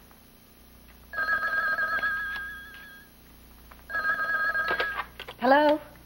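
Landline telephone ringing twice with a warbling ring: a first ring of about two seconds, then a shorter second ring that cuts off as the phone is answered.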